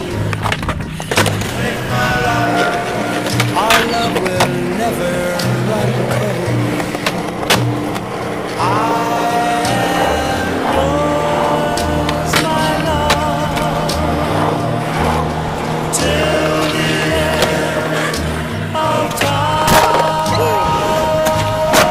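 Skateboard wheels rolling on concrete, with scattered sharp clacks from board pops and landings, under a song with singing and a steady bass line.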